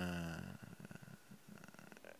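A man's drawn-out hesitation sound "uh", falling slightly in pitch and fading out about half a second in, then trailing into a faint, low creaky rattle in the throat before he speaks again.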